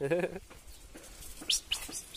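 Common marmosets giving short, high chirping calls, two quick ones about one and a half seconds in.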